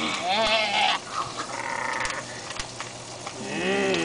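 Children's voices making drawn-out, quavering wordless moans, three in turn, the last one longest and arching in pitch: playacted zombie noises.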